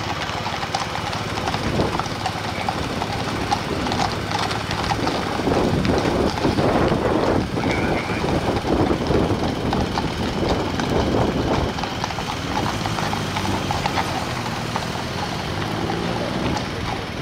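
Horses' hooves clip-clopping on the road as horse-drawn landau carriages pass, with a car driving by about halfway through, when the sound is loudest.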